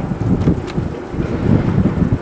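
Wind buffeting the microphone over the low road and driving rumble of a 2003 Ford Mustang Cobra convertible cruising with its top down, a gusty, uneven rumble.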